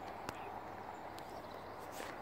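Faint, steady open-air background noise, with a few light clicks.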